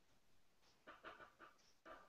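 Near silence: room tone, with a few faint, short breathy puffs about a second in and again near the end.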